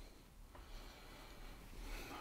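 Quiet room tone with a soft breath through the nose swelling near the end.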